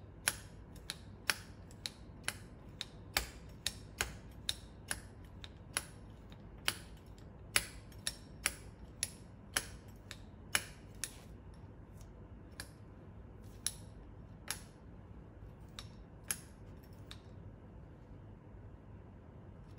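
Manual tufting gun clicking with each squeeze of the handle as it drives yarn through the backing cloth: sharp single clicks about two a second, thinning out to an occasional click after about eleven seconds.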